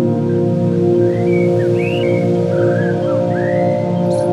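Drone ambient music: a stack of steady, low held tones, with short high gliding chirps over it from about a second in.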